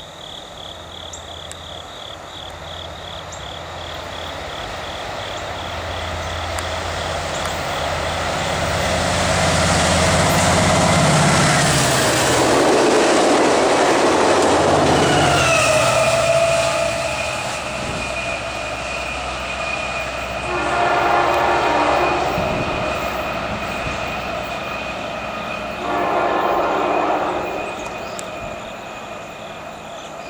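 A diesel-hauled passenger train approaching and passing at speed: engine rumble and wheel-on-rail noise build to a peak about 12 to 15 seconds in, then fade as it pulls away. Its horn sounds farther off as it recedes, one long blast about 20 seconds in and another about 26 seconds in.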